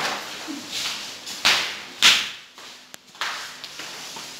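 About four sudden swishes and knocks that fade quickly, the loudest about two seconds in, from students moving about a classroom and handling books and folders.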